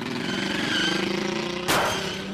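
Cartoon station wagon sound effect: the engine revs up as the car drives off, its pitch slowly rising, with a short loud burst near the end as it speeds away.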